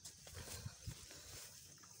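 Faint outdoor ambience on a hillside: a low, uneven rumble with a few soft clicks, and no clear single source.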